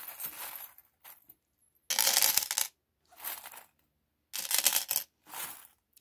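Small metal charms jingling and rattling as they are shaken out of a fabric pouch and cast onto a mirrored tray, in four short bursts starting about two seconds in.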